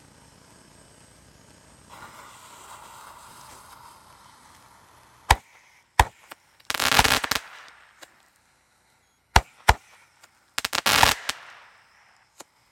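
Xplode XP013 F2 firework battery going off: a fuse hisses for a couple of seconds, then the battery fires single sharp shots and two dense crackling bursts, each lasting under a second.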